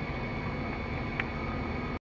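Steady running noise of a 1997 Chevy 1500 pickup's 350 V8 idling, heard inside the cab, with one faint click a little over a second in; the sound then cuts off abruptly.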